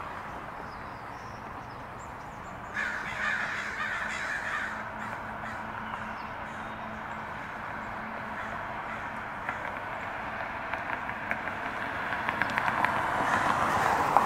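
A flock of crows cawing: a burst of calls about three seconds in, then the calls build up again near the end.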